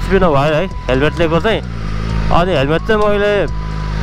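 A man's voice speaking over the steady low drone of a BMW S1000RR's inline-four engine while riding.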